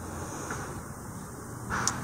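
Faint, steady low rumble of outdoor background noise, with a short breath and a small click near the end.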